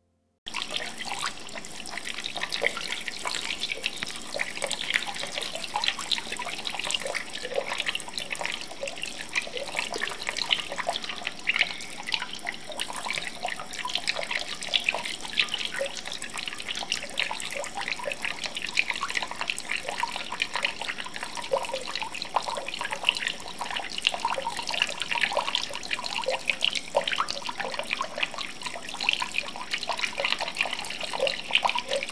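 Water pouring and splashing steadily, like a running stream from a tap, starting suddenly about half a second in.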